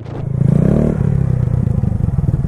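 Honda Grom's 125 cc single-cylinder engine running at low revs with a rapid low pulse, swelling a little about half a second in.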